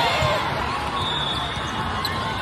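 Athletic shoes squeaking on an indoor sport court during a volleyball rally: short gliding squeaks over the steady chatter and noise of a crowded hall.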